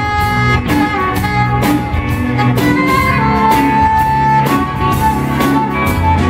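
Live reggae-funk band jamming instrumentally: bass and drum groove with guitars and keys, and a lead melody of long held notes over the top.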